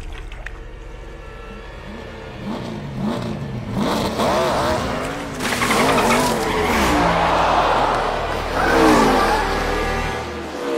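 Race cars passing at speed one after another, each engine's pitch rising and falling as it goes by. From about five seconds in, a dense rushing noise builds under the engines and is loudest near the end.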